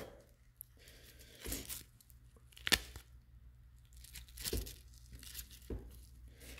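Quiet handling of a nylon mag pouch, its kydex insert and a hook-and-loop retention adapter strip, with a few short rasps and clicks spread through.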